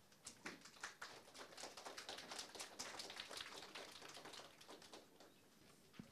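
Faint, quick irregular taps for about four seconds, thinning out toward the end: the debaters walking in and taking their seats.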